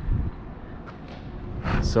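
A man's voice briefly at the start and again near the end, with steady low outdoor background noise in the pause between.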